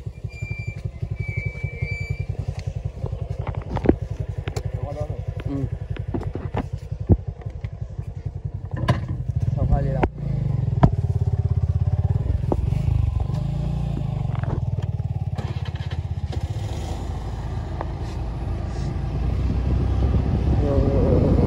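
Suzuki Access 125 scooter's single-cylinder four-stroke engine idling with a fast, even putter, with a few sharp knocks and clicks. About ten seconds in it grows louder and steadier as the scooter pulls away and rides along the road.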